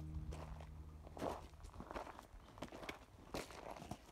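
Footsteps of a hiker walking on a dry dirt and loose-stone trail, a step about every half second.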